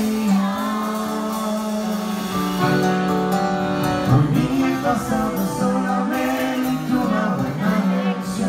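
Live norteño music: a button accordion playing sustained chords and runs over the band, with singing.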